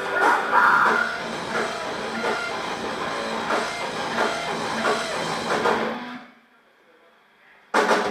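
Live metal band playing amplified: distorted electric guitars, bass and drum kit. The band stops dead about six seconds in, leaving a gap of about a second and a half, then crashes back in together near the end.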